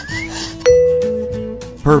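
A cartoon chime sound effect: a bright bell-like ding strikes once about two-thirds of a second in and fades away over about a second, just after a short rising whistle, as a lollipop is coloured in. Cheerful children's background music plays under it.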